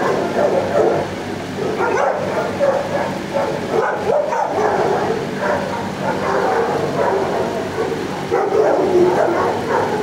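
Shelter dogs barking and yipping in their kennels, many calls overlapping into a continuous din over a steady low hum.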